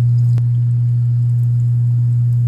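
A loud, steady low hum on one pitch, with a faint click about half a second in.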